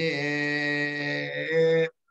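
A man chanting Vedic Sanskrit recitation, holding one syllable at a steady pitch for nearly two seconds; the pitch steps up shortly before the syllable stops abruptly.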